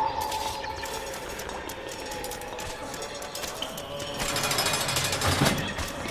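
A dim, steady drone of held tones, joined about four seconds in by a louder, dense, rapid rattling that lasts a little under two seconds.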